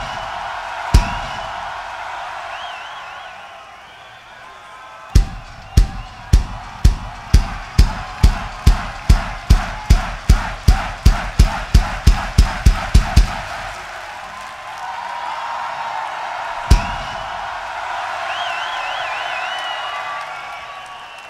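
Single heavy drum strikes from a rock drum kit over a cheering, whistling crowd. One hit comes about a second in. A run of strikes starts about five seconds in, speeds up to several a second and stops about thirteen seconds in. A last lone hit falls near seventeen seconds.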